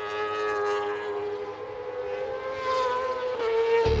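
Moto2 racing motorcycle's 600 cc Honda four-cylinder engine at high revs, a steady high-pitched whine that wavers slightly as the bike runs through a corner. Rock music with a heavy bass comes in right at the end.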